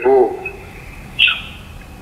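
A man's voice over a telephone line trails off at the start, followed by a pause. There is a single short high chirp about a second in.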